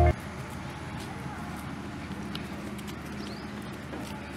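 Marching boots on a paved road: the footsteps of a small group of cadets walking in step, heard as faint scattered steps over outdoor background noise.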